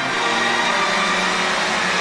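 Concert audience applauding and cheering: a dense, steady wash of clapping and voices, with a few held tones underneath.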